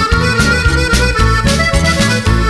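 Instrumental passage of a Mexican ranchera/corrido band recording: an accordion plays held notes over a bass line, and percussion keeps a steady beat.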